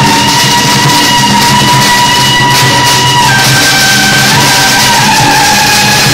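Loud temple-procession band music: a shrill suona melody in long held notes, stepping down in pitch about three seconds in, over steady drums and cymbals. Firecrackers crackle throughout.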